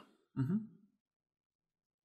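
A man's short murmured 'uh-huh' (угу), a single brief voiced sound with a rising-then-falling pitch about half a second in.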